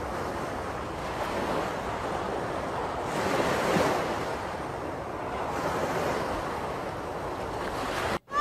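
Sea surf washing in on a beach, with wind rushing on the microphone; the wash swells louder about three to four seconds in, then eases.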